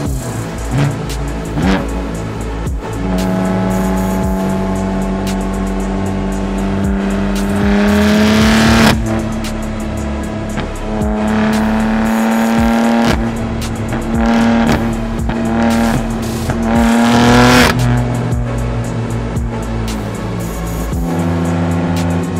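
BMW M4's twin-turbo inline-six accelerating hard: the revs climb for several seconds, drop sharply at an upshift about nine seconds in, then climb again in shorter pulls before falling back to a lower steady note. Music plays underneath.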